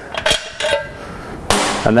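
Light knocks and rubbing of metal from handling the removed front shock absorber and its top turret, in a pause between words.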